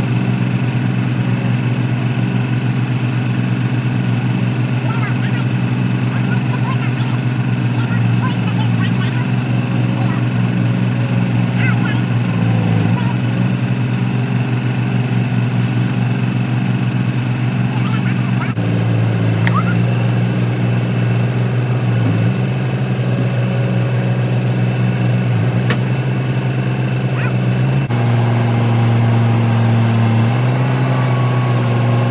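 Caterpillar 287B compact track loader's diesel engine running steadily while it lifts and sets a log onto a sawmill bed. The engine note shifts a little past halfway and again near the end.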